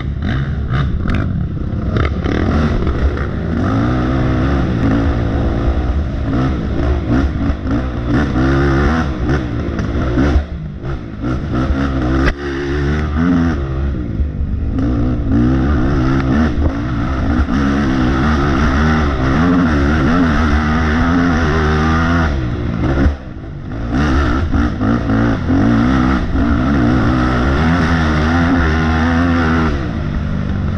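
Dirt bike engine being ridden hard off-road, its pitch rising and falling as the throttle is worked on and off. The engine briefly drops away about three-quarters of the way through, then picks up again.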